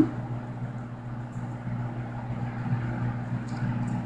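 Steady low hum with a faint hiss over it: background room noise.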